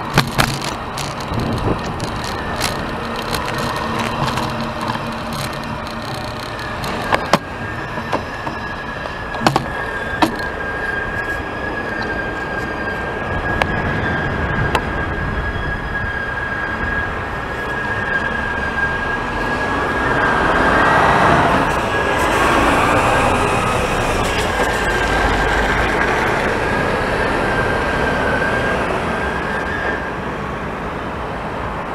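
Road traffic at a city intersection heard from a bicycle, with cars passing and the loudest pass about two-thirds of the way in. A steady high-pitched tone runs under it for most of the time, and a few sharp clicks come in the first ten seconds.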